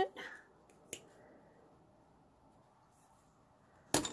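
Mostly quiet room tone, broken by a small click about a second in and a sharp metallic click with a brief clatter near the end, as steel jewellery pliers are handled and set down on the work surface.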